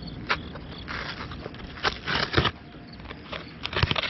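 Cardboard shipping box being torn open by hand: a click, then several short bouts of tearing and crackling, the loudest about two seconds in.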